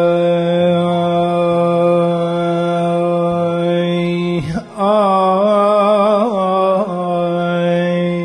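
Unaccompanied male voice singing a Kurdish gorani: one long held note, a quick breath about four and a half seconds in, then a wavering, ornamented phrase.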